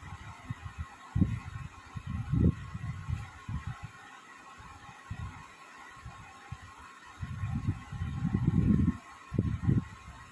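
Cloth being handled and pulled open close to the microphone: irregular low rustles and bumps, loudest about a second in and again from about seven seconds in, over a faint steady hum.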